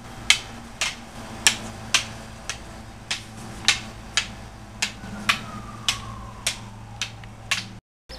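Eskrima sticks clacking against each other in a steady rhythm, about two sharp strikes a second, as two partners trade strikes and blocks in a tres-tres stick drill.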